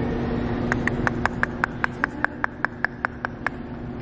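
A rapid run of sharp clicks, about five a second for a couple of seconds, made to catch the attention of a resting white rhinoceros, over a steady low hum.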